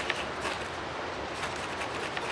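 A ferro rod scraped over and over with a steel striker, rasping as it throws sparks onto a sawdust-and-wax cedar firestarter cake.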